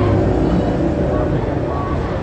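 Street traffic: vehicle engines running close by in a steady low rumble, with people talking over it.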